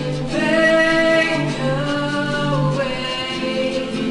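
A young woman singing a slow song with long held notes, accompanying herself on an acoustic guitar.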